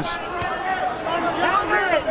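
Boxing arena crowd: spectators' voices shouting and calling out, with one short thud about half a second in.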